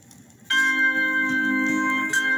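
Vinyl LP playing on a turntable: faint surface noise from the lead-in groove, then about half a second in the song starts abruptly with sustained held chords.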